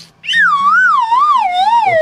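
A comic falling-whistle sound effect: a loud whistle-like tone that wavers up and down about twice a second while sliding steadily down in pitch, starting a moment in.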